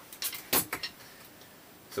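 A handful of short, light clicks and taps in the first second, the strongest about half a second in, then faint room hiss.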